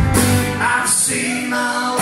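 Live band playing a slow song on electric guitar, acoustic guitar and electric bass, with sustained chords; the deep bass notes drop out about half a second in.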